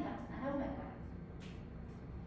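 A woman's voice trailing off in the first half-second, then a steady low room hum with one short burst of noise about a second and a half in.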